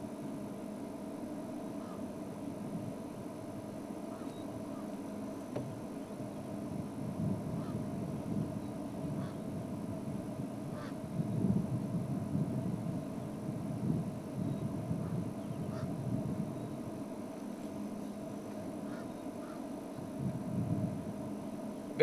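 Steady low rumble with a constant hum, swelling a few times, with a few faint short ticks and no bird calls standing out.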